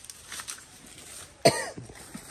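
A single loud cough close to the microphone about one and a half seconds in, with fainter short scrapes and rustles before it.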